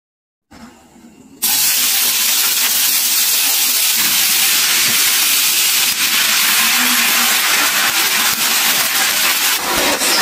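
Loud, steady sizzling hiss of dosa batter on a hot tawa. It starts suddenly about a second and a half in and holds even.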